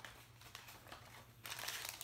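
Small clear plastic parts bag crinkling as it is handled, faint at first and louder from about one and a half seconds in.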